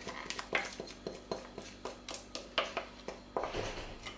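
A metal spoon knocking and scraping on a bowl and baking tin as thick cake batter is scooped into the tin: a run of light, irregular knocks, about three a second.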